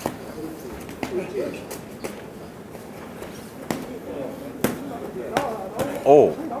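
Boxing gloves landing in a series of about seven sharp, irregular smacks during an exchange of punches, with faint shouting voices from ringside between them.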